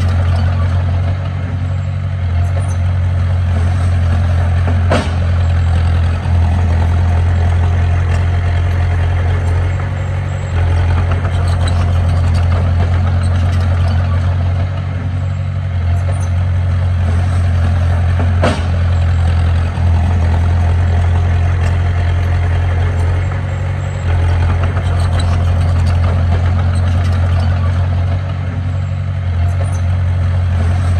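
Diesel engines of a dump truck and a small Komatsu D20P bulldozer running steadily with a strong low hum, as the truck tips its load of soil and rock. Two short sharp knocks stand out, about five seconds in and again near eighteen seconds.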